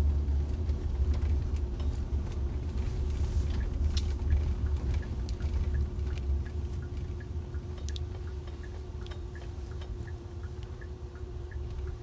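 Low rumble of a moving car heard from inside its cabin, with a steady hum over it; faint ticking comes in during the second half.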